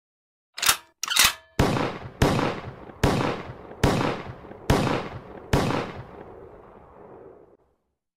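Edited logo sound effects: two short sharp cracks, then six heavy gunshot-like hits spaced evenly about a second apart, each with a ringing tail, the last fading out.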